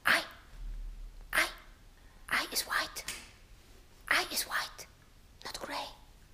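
Soft whispered speech in five short bursts, a second or so apart.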